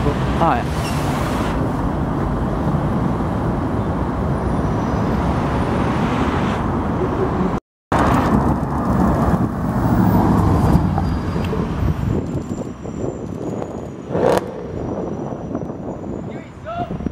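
City street traffic: a double-decker bus and cars running at a junction, then, after a brief dropout where the sound cuts, a Mercedes-Benz C63 AMG's V8 engine driving past in traffic, loudest a couple of seconds after the cut.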